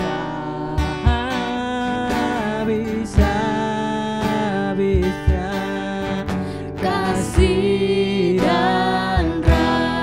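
A worship song sung by a woman's voice with a second voice over a strummed acoustic guitar, with low thumps on some beats.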